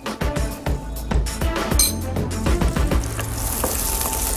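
Sliced button mushrooms frying in olive oil in a nonstick pan. The sizzle swells into a steady hiss about halfway through, over background music with a beat.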